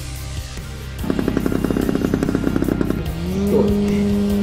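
Engine of a large-scale radio-controlled Fieseler Storch model plane: from about a second in, a rapid even pulsing as it runs at low throttle, then a short rise to a steady higher-pitched drone about three seconds in as it opens up for the takeoff run. Music plays underneath.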